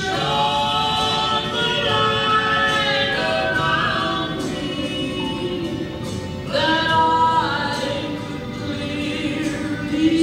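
Gospel song with several voices singing in harmony over musical backing, a new sung phrase entering about six and a half seconds in.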